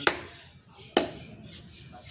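Butcher's knife chopping through beef onto a wooden log chopping block: two sharp chops about a second apart.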